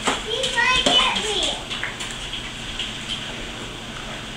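A young child's high-pitched wordless vocal sounds, short rising squeals and calls in roughly the first second, then only quiet room noise.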